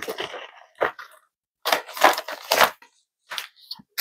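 Metallic foil mailer crinkling in a series of irregular bursts as its contents are pulled out by hand.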